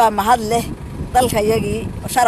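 Speech: a voice talking in two short phrases over a low, steady background rumble.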